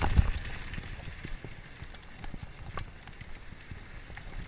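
Mountain bike running fast down a dirt trail: a steady low rumble of tyres over the ground with irregular knocks and clicks from the bike rattling over bumps, the loudest thump just after the start.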